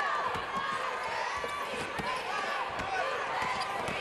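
Game sound from the arena: a basketball bouncing on the hardwood court, with steady crowd noise and several sharp knocks.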